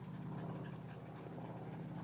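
Border collies panting faintly.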